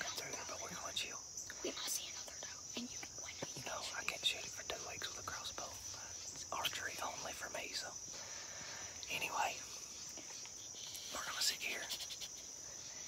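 Hushed whispering between two people, in short bursts, over a steady high-pitched chorus of insects.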